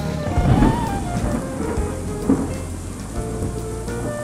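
Storm sound effects: steady rain, with a loud thunder swell about half a second in and a second, shorter one just past two seconds, under background music.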